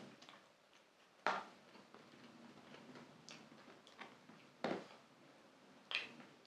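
Quiet chewing of soft pizza with three sharp wet mouth smacks, the loudest about a second in.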